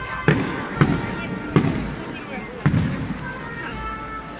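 Four sharp bangs of festival firecrackers, unevenly spaced within about two and a half seconds, each trailing a short low echo. Music and voices carry on underneath.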